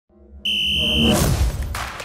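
Electronic logo-intro sound effects: a steady high beep lasting under a second, over a low whoosh that swells about a second in and then fades.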